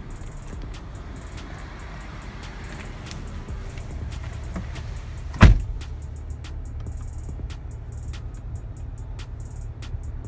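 A car door shuts with one loud thump about five and a half seconds in, among handling clicks and a steady low rumble. Radio music plays in the car's cabin.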